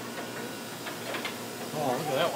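Fast-food restaurant background: indistinct voices, with a few faint clicks about a second in.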